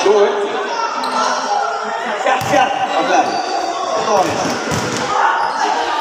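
A basketball bouncing on the court during play, with a few sharp thuds about two and a half and five seconds in, over players' and onlookers' voices echoing in a large hall.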